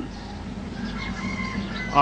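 Steady hiss and low hum of an old recording, with a faint distant bird call held for about a second in the middle.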